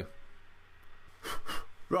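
A single short puff of breath, blown onto a freshly rebuilt dripping atomiser about a second and a half in.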